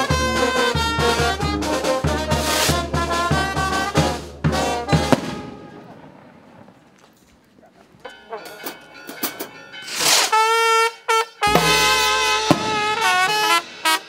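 Mexican village brass band playing, with a bass drum beaten in a steady rhythm and a clashed cymbal under trumpets and trombones. The music fades out about five seconds in; after a quiet stretch a single held brass note sounds, and the full band with bass drum starts again near the end.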